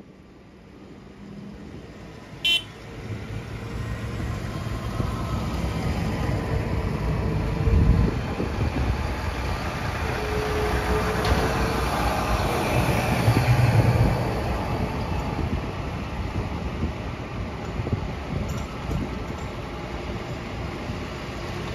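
Diesel engines of large modern tractors (Case IH and Massey Ferguson) driving past one after another on a gravel track, growing louder as each draws near and loudest twice around the middle. A brief high-pitched toot sounds about two and a half seconds in.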